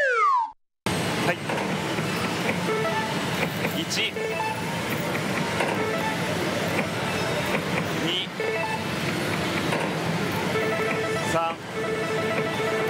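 Pachislot hall din: a dense steady noise of many slot machines, with electronic beeps, jingles and reel clicks running through it. At the very start a falling-pitch sound effect slides down and cuts off into a short silence before the hall noise returns.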